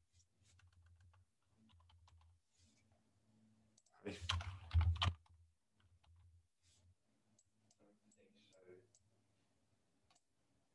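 Computer keyboard typing: a quick run of keystrokes about four seconds in, with scattered faint clicks before and after.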